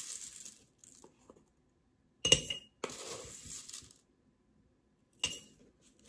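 A metal spoon clinks sharply twice against a glass mason jar, with a short ring each time, about three seconds apart. In between, dried minced onion flakes rustle as they are poured in.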